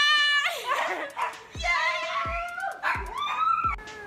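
High-pitched squealing laughter from a woman, followed by voices and a few dull thuds of footsteps on stairs, about one every half second to a second.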